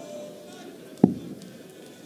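A single steel-tip dart striking the dartboard with a sharp thud about a second in, a throw at double top that misses.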